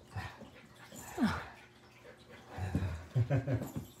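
A West Highland white terrier's play noises while grabbing at a toy: a short falling whine about a second in, then a quick run of low, growly grunts near the end.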